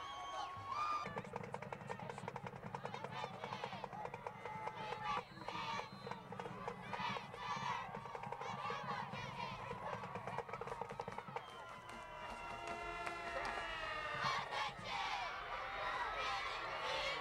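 Music with wavering pitched voices or instruments over a steady low drone, with crowd noise from the stands.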